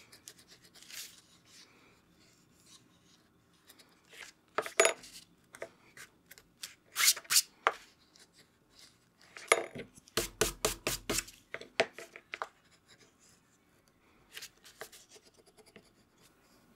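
Hands working with paper and bookbinding materials: soft rubbing and scratching with scattered light taps, and a quick run of about six sharp taps a little past the middle.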